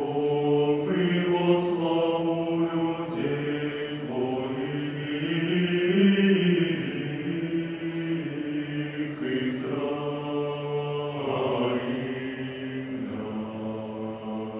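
Male chamber choir singing Orthodox sacred music a cappella: voices in chords held on long notes, swelling to its loudest about halfway through and easing off towards the end.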